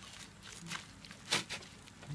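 A metal spoon scraping across the salt-crusted, charred skin of a grilled fish: one short, sharp scrape a little past halfway, with a smaller scratch just after it.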